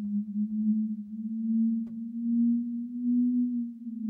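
Closing drone of an electronic track: a single low synthesizer tone held steady, swelling and easing in loudness about every second and a half, with one faint click about two seconds in.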